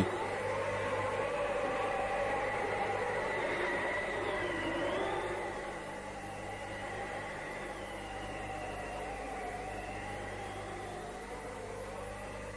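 Eerie soundtrack drone: several sustained tones that slowly waver up and down in pitch over a steady low electrical hum, easing a little about halfway through.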